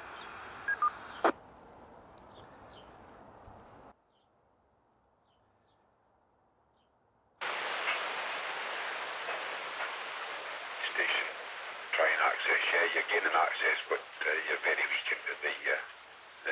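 A VHF handheld transceiver's speaker receiving a reply to a radio check: faint hiss with a click, then after a dead gap the squelch opens about seven seconds in with a sudden rush of static, and a distant station's voice comes through under the noise. The incoming signal is weak.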